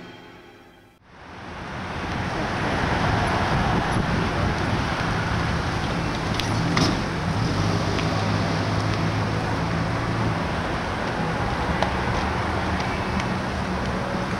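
Steady outdoor road-traffic noise with a low hum of passing cars, coming in about a second in after a faint sound fades away; a couple of faint clicks in the middle.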